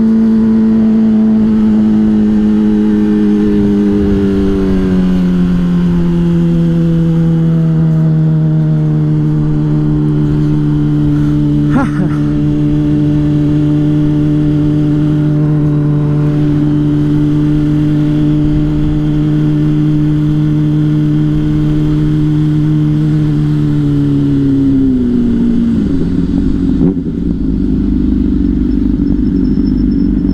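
Honda CBR600RR inline-four engine running at high, steady revs on the move. Its note eases down a little a few seconds in and holds steady for a long stretch. Near the end it drops away as the bike slows, with rushing wind noise underneath.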